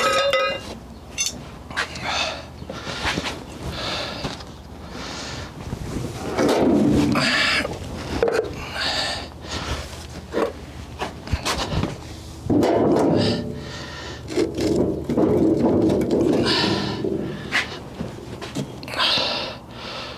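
Irregular knocks, scrapes and gritty rustles from handling a wooden sand-casting mold flask and its molding sand at a sand muller.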